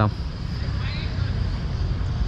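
Steady low outdoor background rumble, continuous and fairly loud.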